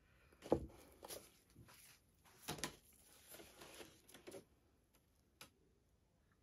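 Faint handling noises from a round canvas being tilted in gloved hands: a few soft knocks and rustles, the clearest about half a second in and again about two and a half seconds in.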